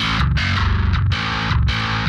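Heavily distorted, programmed djent bass playing back: tight, stop-start low chugs with a gritty, saturated upper layer, run through a multiband compressor that is holding down the harsh highs around 4 kHz.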